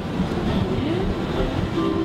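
Steady low rumbling noise with faint voices in the background.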